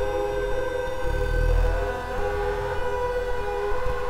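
SOMA Lyra-8 analog synthesizer droning on several held tones, with one voice gliding up in pitch from about a second and a half in as its tune knob is turned, over a low rumble that swells and fades.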